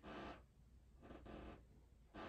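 Near silence with two faint, short, soft sounds about a second apart, from a person doing slow chest lifts on a creaky old wooden floor.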